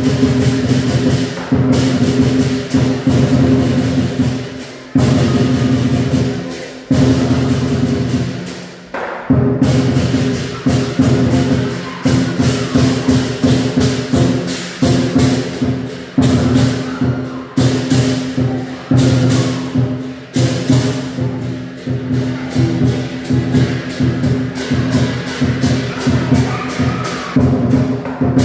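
Chinese lion dance percussion: a large drum beaten in fast, dense strokes with clashing cymbals ringing over it. It breaks off briefly a few times in the first ten seconds, then plays on without a pause.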